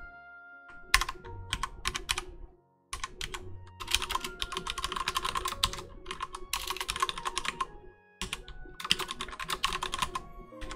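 Typing on a computer keyboard: a few scattered keystrokes about a second in, then fast runs of typing from about four seconds on, over quiet background music.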